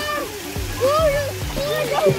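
Short calls from several voices, with water splashing in a swimming pool.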